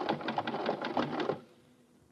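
Radio-drama sound effect of the 'logic' computer working out an answer: a rapid mechanical clatter like a teletype, about ten clicks a second, that cuts off suddenly about one and a half seconds in.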